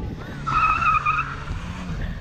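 A small car's tyres squealing as it slides in circles on tarmac, with one strong squeal lasting under a second about halfway in and shorter squeals near the start. Its engine runs steadily underneath.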